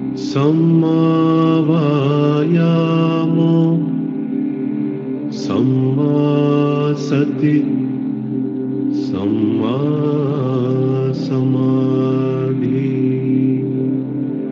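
Buddhist chanting in long, held phrases that slowly glide in pitch. There are three phrases, with brief breaks about five and nine seconds in.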